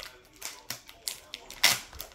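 Foil hockey card pack being torn open and crinkled by hand: a few sharp crackles, the loudest about three-quarters of the way in.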